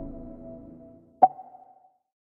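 Outro music fading out over the first second, then a single short electronic ping about a second and a quarter in that rings out briefly.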